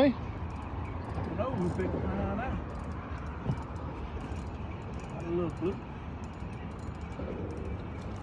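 Faint, muffled voices, a few short bits about a second and a half in and again past five seconds, over a steady low rumble.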